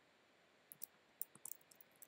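Faint computer keyboard clicks: a quick run of about half a dozen keystrokes in the second half, over near silence.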